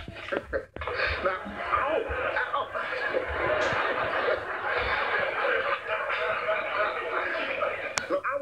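Sitcom studio audience laughing in a long, steady swell that builds about a second in, heard through a television speaker.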